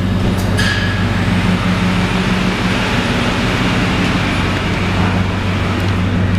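Ford 5.4-litre Triton V8 of a 2005 F-150 idling steadily, with a few sharp clicks in the first second and a rushing hiss through the middle.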